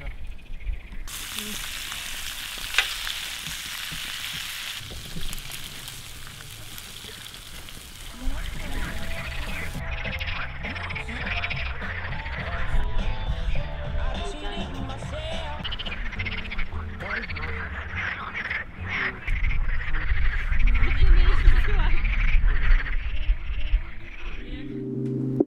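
Frogs croaking in chorus from the pond over a crackling, hissing campfire. The fire's crackle is loudest in the first several seconds; after about ten seconds the croaking takes over, densely overlapping, and a low rumble swells near the end.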